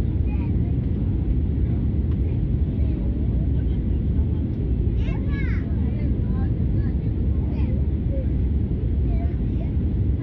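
Steady rumble of a jet airliner's cabin in flight, the engine and airflow noise heard from a window seat during the approach to landing. Faint passenger voices in the background, most noticeable about halfway through.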